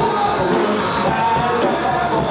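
Live rock band playing: a male singer sings into a microphone over electric guitar, bass and drums, at a steady loud level.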